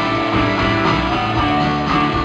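Live rock band playing a guitar-led song: strummed electric guitars over bass and drums.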